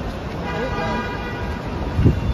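A car horn honks once for just under a second, starting about half a second in, over traffic noise and voices.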